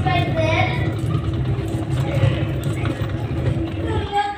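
Haier twin-tub washing machine's wash tub running: the motor and pulsator churn the soapy wash water with a steady low hum.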